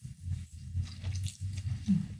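A person chewing a mouthful of fried instant noodles close to the microphone: a run of small, irregular wet smacks and clicks.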